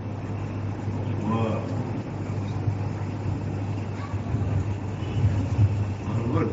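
Steady background noise of the recording with a constant low hum, and a faint voice heard briefly about a second and a half in.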